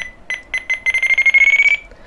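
FrSky Taranis radio transmitter beeping as its elevator trim switch is pushed, each beep marking one trim step: a few single beeps, then a fast run of beeps about a second in, rising slightly in pitch as the trim moves toward down trim.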